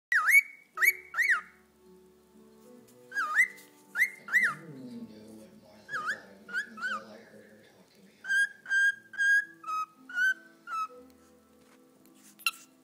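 Young pet cockatiel whistling. First come groups of two or three quick up-and-down chirps, its attempt at saying its own name. Then, from about eight seconds in, a run of six held whistle notes that step down in pitch, a try at whistling a tune.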